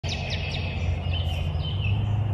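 Birds chirping over a steady low hum: three quick downward chirps at the start, then a few short whistled notes.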